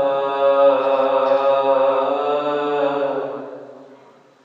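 A man's unaccompanied voice in devotional chanted recitation, holding one long, steady note that fades out after about three seconds.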